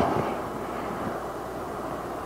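Steady low background noise of a large room in a pause between spoken words, with the echo of the last word fading away at the start.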